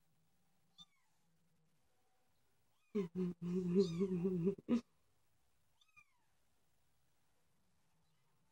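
Week-old kitten mewing: two faint, short, falling high mews, and about three seconds in a louder, lower, wavering cry lasting under two seconds.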